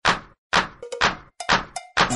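Sharp percussion hits in a backing track, evenly spaced at about two a second, each dying away quickly.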